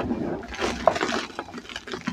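Hands squeezing and crumbling green-dyed powdered gym chalk in a bowl: a dense, crackly crunching with sharper crunches throughout, the loudest a little under a second in.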